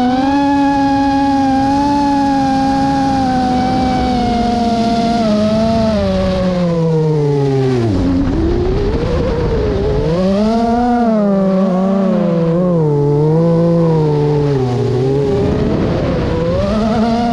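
Drone motors and propellers whining, heard from the onboard camera. The pitch holds steady, drops low about eight seconds in as the throttle comes off, then climbs back and wavers up and down with the throttle.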